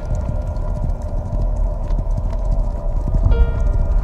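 Horses' hooves clip-clopping over a sustained music score.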